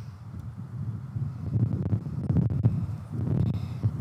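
Wind buffeting the microphone: a low, gusting rumble that swells and fades, with a few faint clicks.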